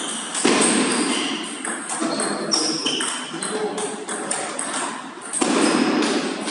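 Table tennis rally: the ball clicking sharply off rackets and the table in a quick back-and-forth exchange, many hits each with a short high ring.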